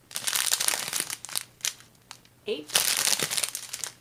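Small clear plastic zip-top bags of diamond painting drills crinkling as they are handled. The crinkling comes in two spells with a short pause between.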